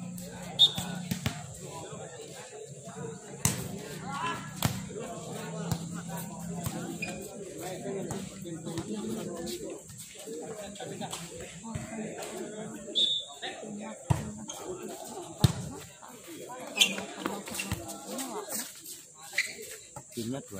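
Voices of players and spectators talking on and off, broken by sharp smacks of a volleyball being struck by hand, about half a dozen times.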